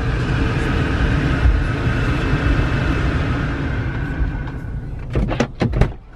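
Steady road and engine noise inside a car's cabin as it drives slowly. In the last second, a quick run of clicks and knocks as the passenger door is opened from outside.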